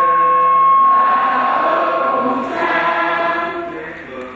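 Catholic liturgical chant sung into a microphone: one long held note, then a fuller sung phrase from about two and a half seconds in that fades before the end.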